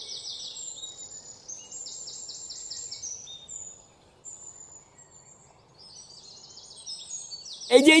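Small birds chirping with quick high-pitched trills, in two spells with a thinner stretch in the middle, over a faint hiss.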